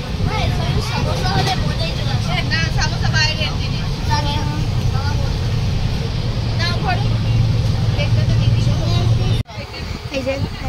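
Inside a railway sleeper coach: the train running with a steady low rumble, with passengers' voices chattering over it. The sound cuts off abruptly near the end.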